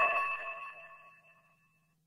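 The ringing tail of a bright chiming logo jingle, its sustained tones dying away to silence about a second in.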